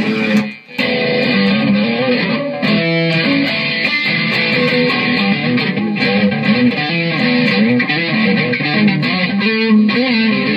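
Electric guitar played through an amplifier in a rock song's instrumental stretch, a red Stratocaster-style solid-body with three single-coil pickups, its lines moving up and down in pitch. The music cuts out briefly about half a second in, then carries on steadily.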